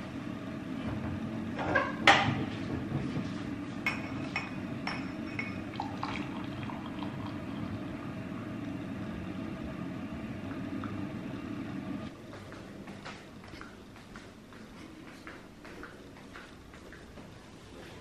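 Tea poured from a pot through a metal mesh strainer into a glass mug, with one loud clink of metal on glass about two seconds in and a few lighter clinks after. The pouring sound drops away about twelve seconds in.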